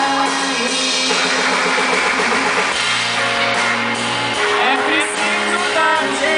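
A woman singing into a handheld microphone over a live band with guitar and drums, the melody held in long, wavering notes.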